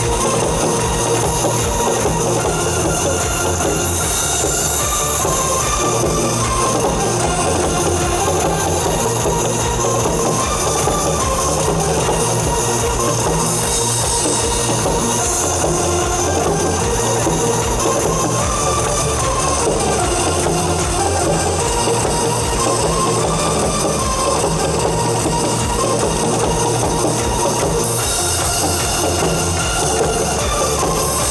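Janggu (Korean hourglass drum) struck rapidly with sticks in a drum-show style, played live over a loud electronic dance backing track with a steady driving beat.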